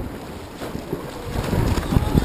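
Wind buffeting the microphone over water splashing from the paddle strokes of a wildwater racing kayak, getting louder in the second half.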